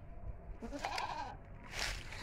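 A goat bleating once in the background, a short wavering call about halfway through, followed by a brief rustle near the end.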